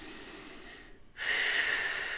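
A woman's long, deep breath, starting suddenly about a second in and fading slowly, after a fainter breath at the start.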